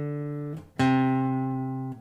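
Acoustic guitar plucking single bass notes: the open D string rings and fades, then the C at the third fret of the fifth string is struck just under a second in and rings out.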